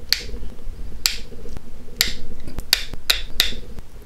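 Opal flakes snapping off the edge of an opal arrowhead blank under a steel-tipped pressure flaker: about six sharp clicks, roughly a second apart at first, then quicker near the end.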